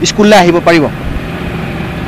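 A man speaking for about a second, then a pause filled with a steady, even background hum from the live outdoor line.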